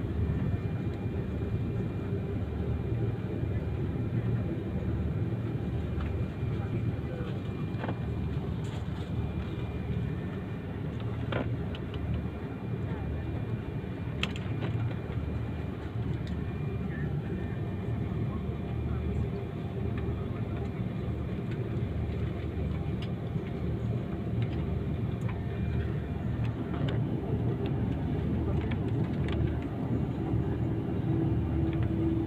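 Airliner cabin noise while taxiing: a steady low rumble of the jet engines at taxi power and the wheels rolling over the taxiway, with faint voices in the cabin.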